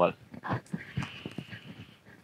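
Faint, broken voices with a few small clicks during a pause between speakers at a microphone, and a faint steady high tone in the second half.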